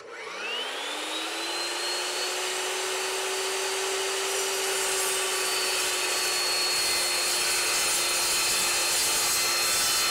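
Evolution S355MCS 14-inch metal-cutting chop saw's motor switched on, its pitch rising for about a second and a half as it spins the blade up to speed, then running steadily as the blade head is lowered toward a clamped steel angle.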